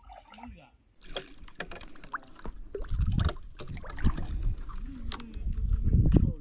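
A hooked bighead carp splashing and thrashing at the surface while it is played in on a long pole rod: irregular sharp splashes, with heavier low surges about three seconds in and again near the end.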